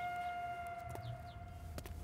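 A single held flute note from the film's background score, fading out about a second in. A few faint clicks follow near the end.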